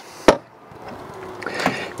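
Exterior storage-compartment door on a travel trailer, held by magnetic latches, giving one sharp knock as it is swung open, followed by quieter handling sounds and a fainter tap near the end.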